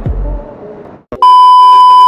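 Electronic music with deep kick-drum hits, breaking off about a second in, then a loud, steady, high test-tone beep of the kind played over TV colour bars.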